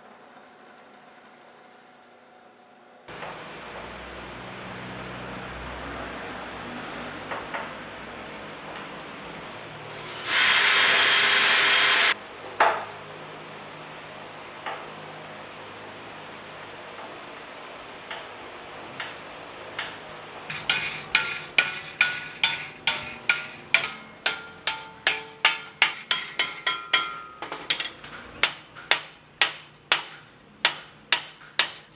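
Hammer blows on a stainless steel sheet clamped in a vice, bending it into a bracket. The blows come about two a second and ring, starting about twenty seconds in. Earlier, a power tool runs loudly for about two seconds.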